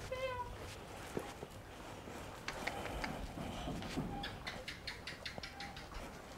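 A cat gives one short meow right at the start, followed by faint, evenly spaced footsteps.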